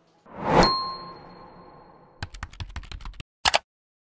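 Sound effects: a quick whoosh that swells into a bright ding, its ring fading over about a second. Then comes a rapid run of keyboard-typing clicks, and one sharper click near the end, like a search being entered.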